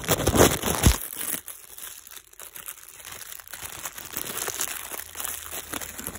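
Close-up rustling and crinkling handling noise with scattered light clicks, loudest in the first second and a half with a heavy bump on the microphone, then quieter crackling.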